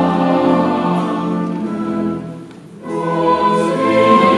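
Sung music with several voices holding long notes in a choral, classical style. It falls to a brief near-pause about two and a half seconds in, then resumes.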